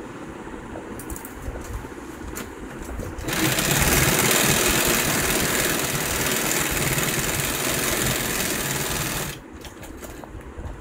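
Industrial sewing machine running steadily as it stitches a leather steering wheel cover. It starts about three seconds in and stops about a second before the end. Before it starts, a few light clicks come from the cover being handled at the machine.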